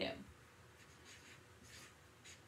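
Felt-tip marker writing on chart paper: several short, faint scratching strokes as numbers are written.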